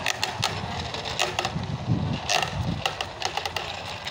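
A small propeller-driven robot boat rattling along a sheet-metal gutter channel: irregular clicks and knocks as its plastic side wheels bump the metal walls.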